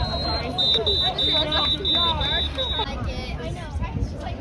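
A high-pitched electronic beeping: one longer beep, then a quick series of about seven short beeps at roughly three a second, stopping a little before three seconds in. Voices chatter in the background.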